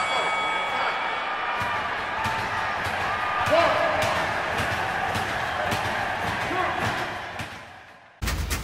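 Crowd noise with shouting voices and scattered thuds and clicks, fading away over the last second or so.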